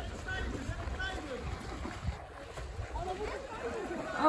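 Distant, overlapping voices of people calling out and chattering, over a low rumble of wind on the microphone.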